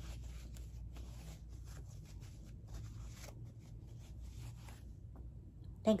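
Faint rustling and rubbing of a paper tissue worked between hands as they are wiped clean, mostly in the first three seconds, over a low steady hum.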